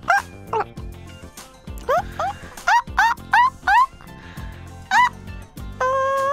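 A monkey character's hooting calls, short rising 'ooh' whoops made in imitation of a monkey: a couple near the start, a quick run of about seven between two and four seconds in, and one more near five seconds, over light background music.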